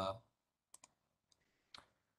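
A few faint computer mouse clicks over near silence: a quick pair just under a second in, and another near the end. A man's voice trails off at the very start.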